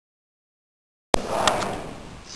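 Dead silence for about a second, then the soundtrack cuts in abruptly with a click on a group of voices reciting together in a large, echoing room.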